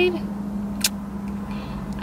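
Steady low hum inside a stationary car, with one short click a little under a second in.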